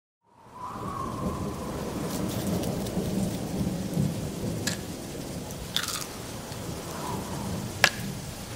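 Steady rain with rumbling thunder, fading in at the start, with a few sharp cracks later on.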